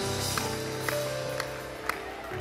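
Soft worship music: sustained keyboard chords shifting slowly, with a light tick about twice a second.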